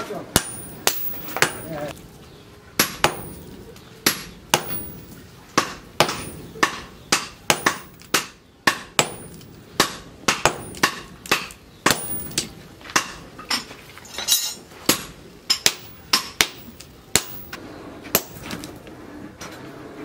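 Hand hammer blows on a red-hot steel axe head held in tongs on a steel post anvil, forging it. Sharp metallic strikes in a steady run of about two a second, with a short pause about two seconds in.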